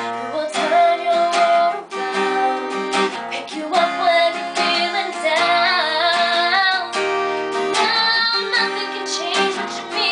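A girl singing a slow ballad over a steadily strummed acoustic guitar, unamplified.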